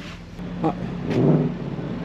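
A vehicle engine running with a steady low hum, swelling briefly about a second in.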